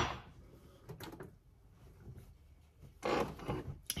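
A ceramic mug set down on a stone kitchen countertop with one sharp clack, followed by a few faint knocks about a second later and a brief rushing noise near the end.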